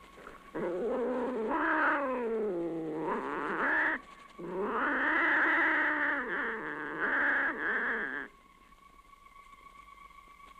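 Two long, drawn-out cat yowls, each sliding down in pitch: the first lasts about three and a half seconds, and the second, about four seconds long, follows after a short breath.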